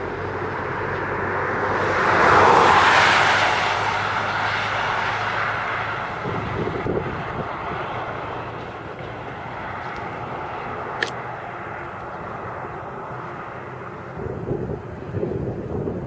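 A passing vehicle: its noise swells to a peak about two and a half seconds in and fades away over the next few seconds. A single sharp click comes near the eleventh second.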